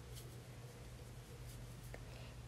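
Faint rustling of yarn being worked with a metal crochet hook, over a steady low room hum.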